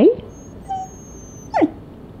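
Bedlington terrier vocalising on cue in imitation of the words 'I love you'. A drawn-out yowl like the syllable 'I' ends right at the start, a faint brief whimper follows, and about one and a half seconds in comes a short whine that falls sharply in pitch.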